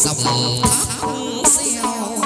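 Chầu văn ritual music played by a live ensemble: a thin, high, buzzy melody line over metal percussion strikes about every three quarters of a second.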